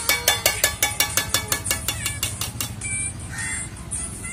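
A fast, even beat of sharp strikes, about six or seven a second, that fades out after about two and a half seconds.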